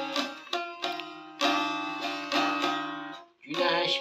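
Bağlama (saz), a long-necked Turkish lute, being struck: chords ring out and fade, with a fresh stroke about a second and a half in, a brief break about three seconds in, then the playing picks up again.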